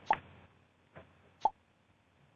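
Mostly quiet room tone broken by a few short pops: a sharp one just after the start, a faint one about a second in and another about a second and a half in.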